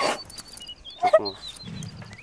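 A woman crying: a sharp sobbing breath at the start and a short, high whimpering cry about a second in. Small birds chirp repeatedly in the background.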